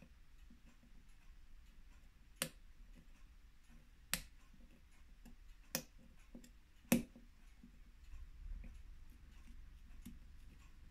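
Four sharp, light metallic clicks, one to two seconds apart, as steel watchmaker's tweezers work at the stem of a Citizen watch's Miyota 8200 automatic movement in its case.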